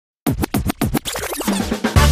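Opening of a funk library music track: after a brief silence, a rapid run of turntable scratches, then a falling sweep that leads into the beat near the end.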